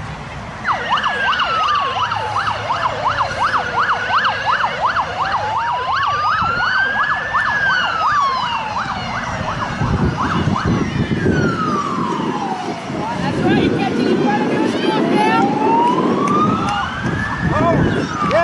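Emergency vehicle siren sounding on the move: a slow wail rising and falling every few seconds, with a fast yelping tone over it for the first several seconds.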